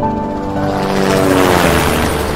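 Small quadcopter drone's propellers sweeping past, a rising rush with a whine that falls in pitch toward the end, over background music.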